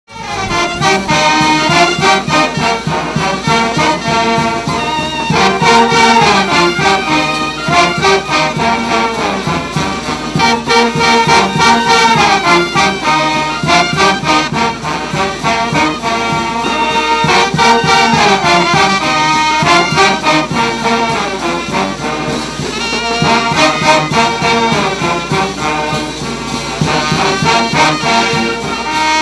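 Large Andean brass band playing a santiago tune: trumpets, trombones, saxophones and sousaphones over drum kit, congas, bass drum and cymbals. The music starts within the first half second and keeps a steady beat.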